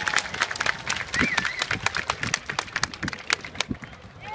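Audience applause: many hands clapping irregularly, with a voice calling out about a second in, dying away near the end.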